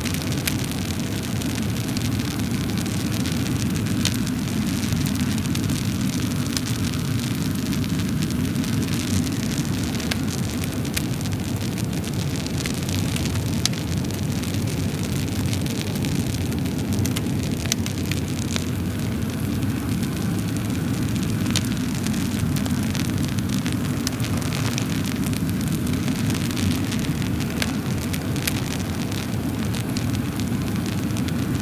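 A wood fire burning: a steady low rumble of flames with many scattered sharp crackles and pops.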